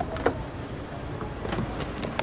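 A car door latch clicks as the rear door handle of a Mahindra Scorpio-N is pulled and the door swings open, with a few fainter ticks near the end.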